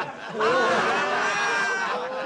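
A group of men laughing and calling out together, several voices at once, starting about half a second in.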